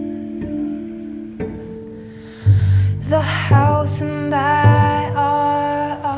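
A slow vocal jazz ballad: an upright double bass plucks low notes about once a second under held bowed-cello tones, and a woman's voice sings a wavering line from about halfway in.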